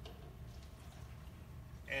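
Steady low room hum with faint background noise in a pause in speech; a man's voice starts again right at the end.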